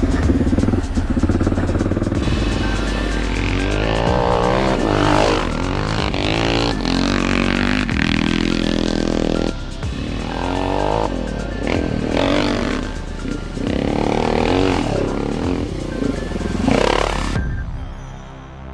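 Background music over a Yamaha HL500 single-cylinder four-stroke motocross engine, revving up and down repeatedly as the bike is ridden hard round the track. Both fade down near the end.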